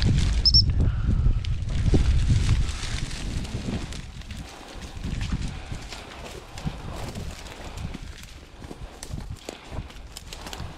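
Rustling and crunching through dry, tall grass, with wind rumbling on the microphone for the first three seconds or so, then quieter crackling.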